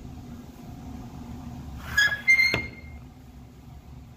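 Two sharp handling clicks about two seconds in, the second with a brief metallic ring, over a steady low room hum.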